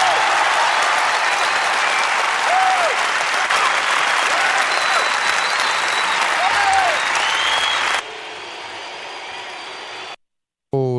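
Crowd applauding and cheering at the end of a song, with shouts rising and falling over the clapping. The applause drops sharply in level about eight seconds in.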